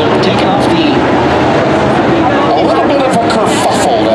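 A voice over a public-address loudspeaker, with steady race-car engine noise underneath.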